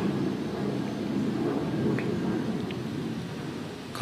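Steady low rumbling background noise with a few faint high ticks, during a pause in speech.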